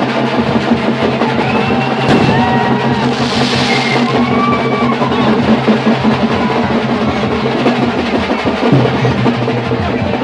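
Loud festival music driven by fast, dense drumming over a steady low drone, with a brief hiss about three seconds in.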